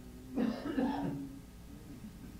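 A person coughing, two coughs close together about half a second in.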